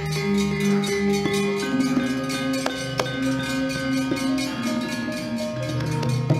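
Javanese gamelan playing: metallophones and gongs ringing sustained pitched notes, with a few sharp knocks along the way.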